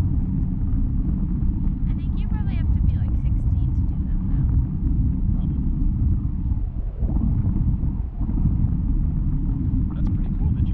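Wind buffeting the microphone of a camera carried aloft on a parasail: a heavy, steady low rumble that dips briefly twice, about seven and eight seconds in.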